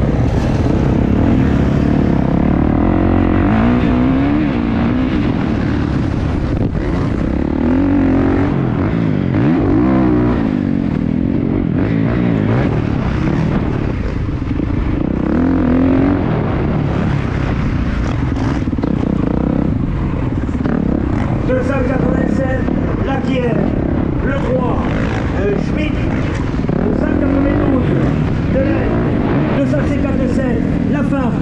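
Kawasaki KX450F four-stroke motocross engine revving, its pitch rising and falling over and over as the bike is ridden round a dirt track, heard close up from the rider's helmet.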